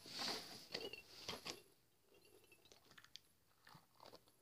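Faint crackly squishing and handling noise from a squishy toy ball being squeezed in the hands, mostly in the first second and a half, then near silence with a few faint clicks.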